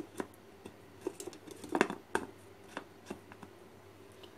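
Scattered light clicks and knocks of plastic as the clear plastic bowl and lid of a small food chopper are handled; the motor is not running. The sharpest knocks fall about two seconds in.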